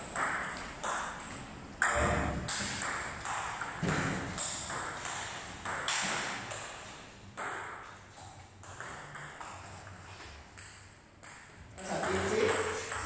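Table tennis rally: the ping-pong ball clicking sharply off the paddles and the table in quick alternation, a few hits a second, each with a short echo.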